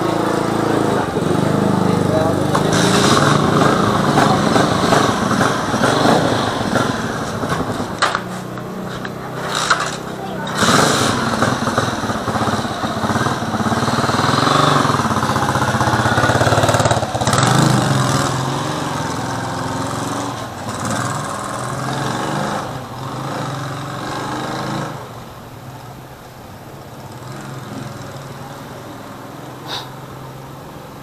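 A motorcycle engine idling steadily, with people talking over it; the sound drops in level for the last few seconds.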